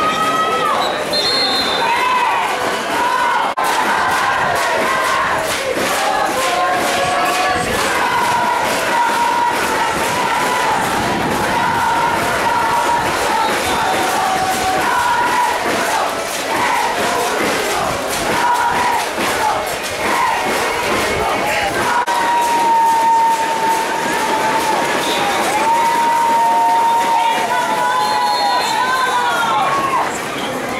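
Crowd at a youth American football game shouting and cheering: many overlapping voices, with some long drawn-out calls.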